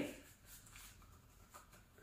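Faint rubbing of an Ansell Gammex powdered latex surgical glove being pulled onto a hand, with a few soft ticks.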